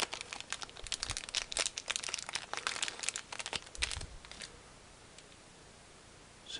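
Small clear plastic bag being handled and opened, crinkling for about the first four and a half seconds, with a couple of soft knocks.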